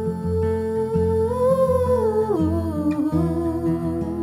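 Music: a wordless female vocal line, hummed, held on long notes that rise a little near the middle and then step down twice, over softly plucked acoustic guitar.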